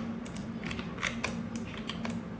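Irregular clicking of a computer mouse and keyboard while working in 3D software, several clicks within two seconds, over a steady low hum.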